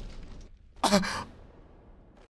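A person's short sighing exhale about a second in, after a loud cry fades out at the start.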